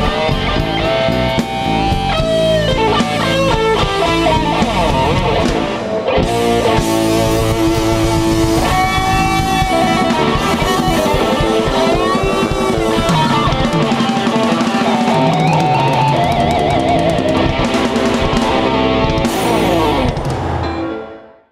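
Live rock band playing without vocals: electric guitars over bass guitar and a drum kit, loud and steady throughout.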